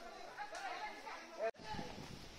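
Background chatter of several people talking, not close to the microphone. About one and a half seconds in there is a sharp click and the sound drops out for an instant, after which a low rumbling noise runs under the voices.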